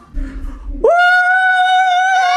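A voice sings one long, loud, high held note, sliding up into it about a second in, after a brief low rumble.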